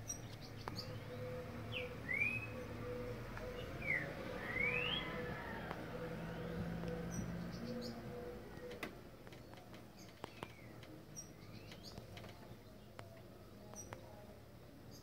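Birds chirping faintly in the background: a few quick sweeping calls in the first five seconds, sparser after. Under them runs a faint steady hum that stops about nine seconds in.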